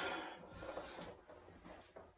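A weightlifter's hard breathing during an incline bench press set: a strained breath out fades over the first half second. Quieter breathing and faint rubbing follow, with a couple of small clicks as the axle bar is lowered for the next rep.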